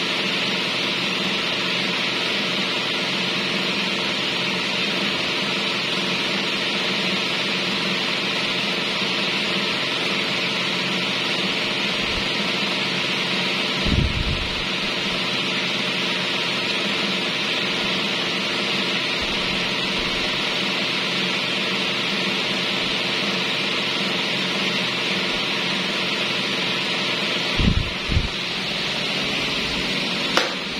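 Several electric stand fans with modified blades running together: a steady rush of air over a low, even motor hum. Two short low bumps, one about halfway through and one near the end.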